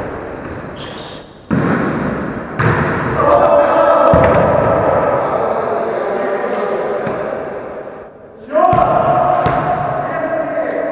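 A volleyball being struck and thudding on a wooden sports-hall floor, with three sharp hits about a second and a half, two and a half, and eight and a half seconds in. Players' voices ring on between the hits in the echoing hall.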